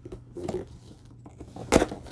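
A cardboard box being handled and shifted about, with a few light rustles and knocks and one sharp knock near the end.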